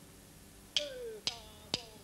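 Drummer's count-in: drumsticks clicked together three times, about half a second apart, starting less than a second in, counting the band into the next song.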